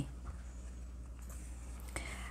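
Low steady hum under faint handling noise of an embroidery needle and yarn being drawn through crocheted fabric, with one small click near the end.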